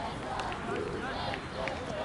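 Distant shouts and calls from players on an outdoor grass football pitch, over a steady open-air background noise, with a few faint ticks.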